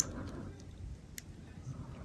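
Faint handling of an action figure's armor pieces as one is fitted on by hand, with a light click about a second in.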